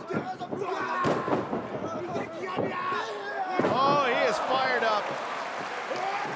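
Wrestlers' bodies slamming onto a wrestling ring's canvas, the clearest thud about a second in, with a man's loud strained shout about four seconds in over arena crowd noise.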